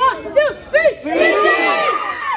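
Team huddle break chant: three quick shouted calls about 0.4 s apart, then the whole group of children shouting together as one.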